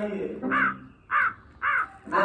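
Three short, harsh caw-like calls, evenly spaced a little over half a second apart.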